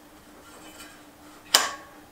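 Faint ticking from a mountain bike's rear wheel as it is handled, then a short sharp click about one and a half seconds in.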